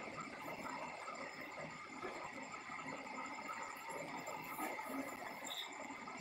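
Faint, steady background hiss of room noise with a few thin steady tones, with no distinct events.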